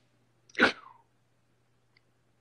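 A woman's single short, loud vocal burst about half a second in, dropping in pitch at its end.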